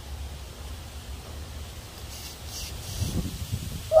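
Low steady rumble with faint rustling, and a few soft crackles in the last second.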